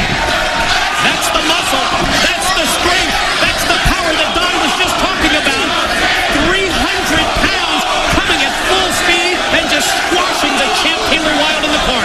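Wrestling crowd: many people shouting and calling out at once, steady throughout, with a few dull thuds.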